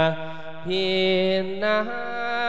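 A Thai monk singing a sermon in the melodic thet lae style, holding long drawn-out notes. Near the end the pitch steps up.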